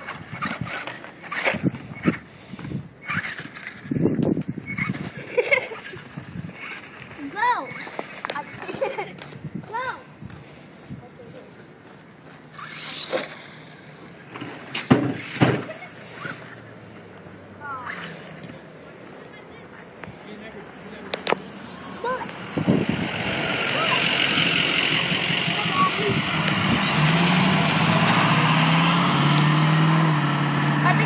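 Children's voices and scattered clicks, then about two-thirds of the way through a steady, louder motor sound sets in, with a thin high whine that rises near the end: an electric radio-controlled truck running.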